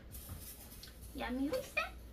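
A person's voice speaking a short phrase in the second half, after a brief hiss.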